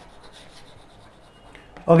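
Chalk scratching on a blackboard as a word is written by hand, a faint dry rubbing. A man's voice starts near the end.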